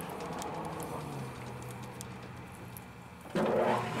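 Metal lathe running steadily while a tap is worked into the bore of the workpiece, with a few light clicks. A man laughs near the end.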